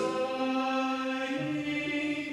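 A slow hymn being sung, with long held notes that move in steps from one pitch to the next.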